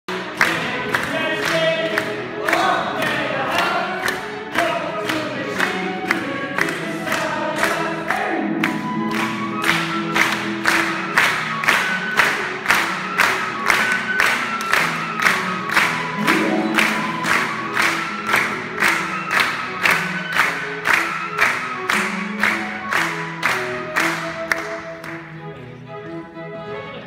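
A male singer with a small chamber ensemble of flute, violin, harp and cello performing a light song, while the audience claps along in time, about twice a second. The clapping stops near the end, leaving the singer and instruments.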